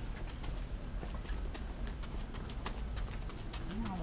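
Footsteps of several people walking on a hard walkway: an uneven patter of sharp clicks and scuffs a few times a second.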